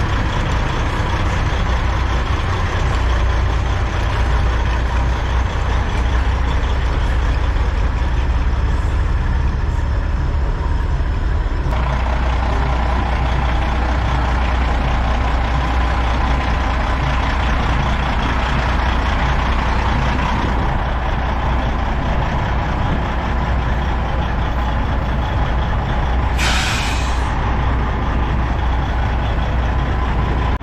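Diesel semi-truck engine idling steadily, with a short burst of air hiss near the end like an air brake releasing.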